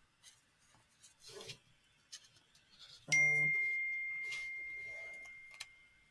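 A single chime about three seconds in: a short lower tone and a clear high ringing tone that fades slowly over two to three seconds. Faint rustles of paper and pen come before it.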